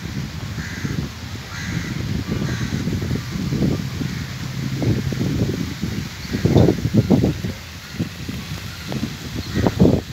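Crows cawing now and then over an uneven low rumble of wind buffeting the microphone, which is the loudest sound throughout.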